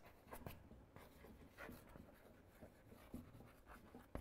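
Near silence with a few faint, brief scratches of writing.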